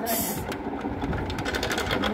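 A plastic doll sliding down a toy slide, giving a fast, rapid rattle of small clicks.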